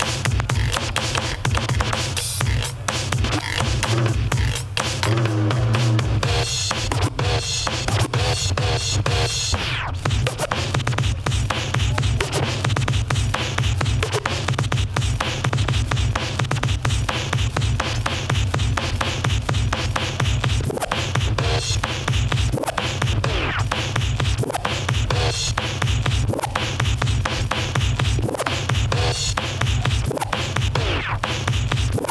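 Turntablist battle routine: vinyl records on two turntables scratched and cut over a heavy electronic beat with deep, steady bass.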